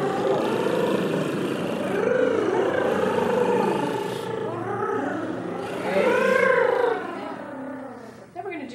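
A group of singers doing voiced rolled-tongue trills, several voices sliding up and down in pitch in overlapping swoops. The sound fades out near the end.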